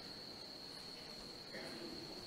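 A faint, steady high-pitched tone held without change, with a brief soft low sound about a second and a half in.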